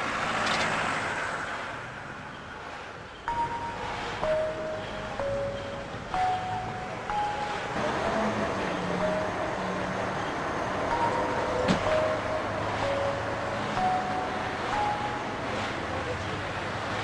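Film background music: a slow melody of single bell-like notes at changing pitches, over a steady wash of noise. One sharp click a little before the twelve-second mark.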